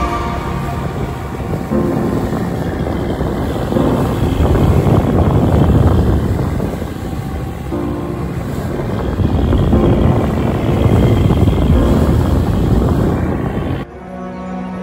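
Wind rumbling on the microphone over a fishing boat's engine running under way at sea, rising and falling in gusts.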